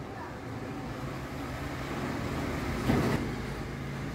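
Background road vehicle noise swelling to a peak about three seconds in and then easing off, over a steady low hum.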